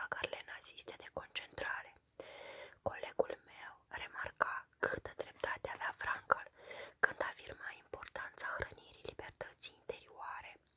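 A woman reading aloud in a whisper: her voice is reduced to whispering by severe laryngitis.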